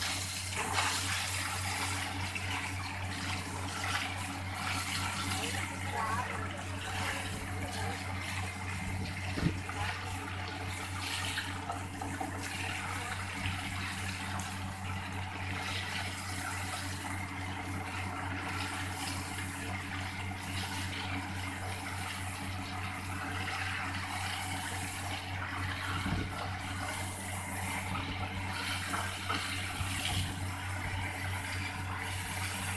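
Borewell drilling rig running steadily: a deep, even engine hum under the continuous rushing hiss of water and slurry being blown up out of the bore around the drill pipe. A single sharp knock comes about nine seconds in.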